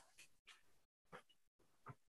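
Near silence, with two faint short sounds, one about a second in and one near the end.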